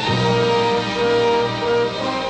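Orchestral cartoon score music, with a short figure of held notes repeating about twice a second.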